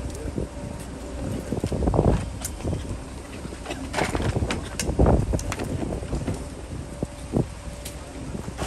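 Low steady rumble of a parked team coach's engine running, with irregular knocks and scuffs from people walking past carrying bags, boxes and a wheeled cooler; the loudest knocks come about two, four and five seconds in.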